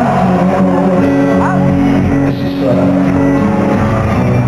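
Live pop band music with guitar, playing steadily, as heard from the audience in an arena.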